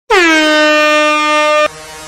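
A single loud air-horn blast sound effect that dips in pitch as it starts, then holds one steady tone for about a second and a half before cutting off sharply. Quieter electronic music begins underneath as it stops.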